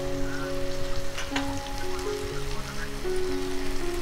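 Soft background music of slow held notes over a steady sizzling hiss from food frying in a pan on a wood fire, with a couple of sharp crackles about a second in.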